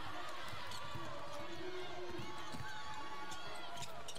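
Steady arena crowd murmur from a basketball broadcast, with a basketball being dribbled on the hardwood court.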